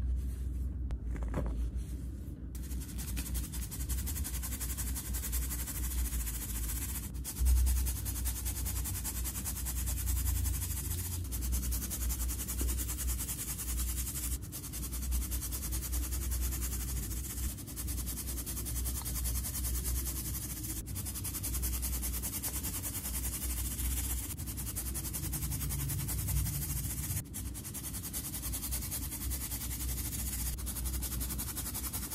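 Dyed baking soda crumbling as a hand squeezes it. About two and a half seconds in, a steady soft hiss begins as the powder is shaken through a metal mesh sieve and falls onto a pile.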